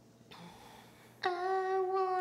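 Old recording of an eight-year-old girl singing a ballad she wrote herself: after a faint hiss, her voice comes in suddenly about a second in on one long held note.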